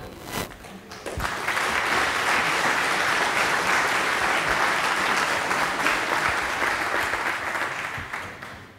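Audience applauding, starting about a second in, holding steady, and fading out near the end.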